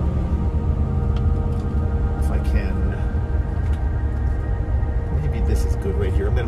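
Steady low rumble of a moving camper van heard from inside the cab, with a few faint light knocks. Steady droning tones sit over it without a break.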